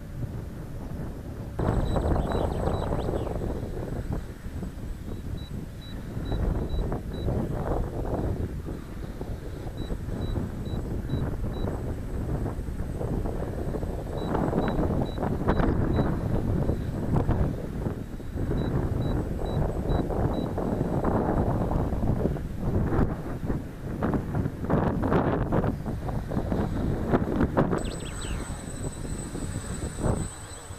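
Gusty wind buffeting the camera microphone, loud and uneven. Through it come short runs of four or five faint high beeps, repeating every four to five seconds.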